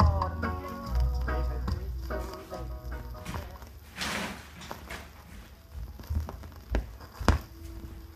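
A 1977 reggae song playing from a 7-inch vinyl single on a turntable, fading out at its end. A last sung note at the start gives way to the band growing steadily quieter, with a few sharp drum hits near the end.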